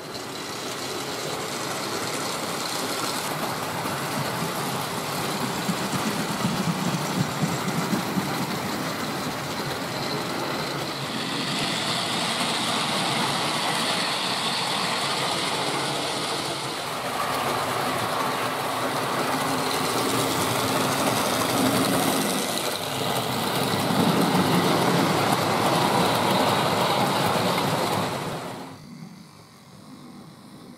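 Hornby Dublo 00-gauge model trains running on loose-laid metal track, a steady rattling of wheels on rail that changes as different trains pass. It falls away sharply near the end.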